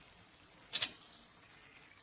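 A single short clink of a metal spoon against the cooking pan, under a faint steady hiss.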